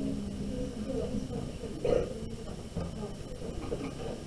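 Faint, low voices talking in the background, with one slightly louder moment about two seconds in.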